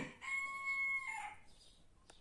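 A rooster crowing: one held call of about a second that drops in pitch as it ends.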